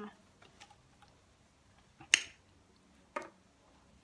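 Paper and notebook being handled: a few short, sharp clicks and rustles, the loudest about two seconds in and a smaller one about a second later.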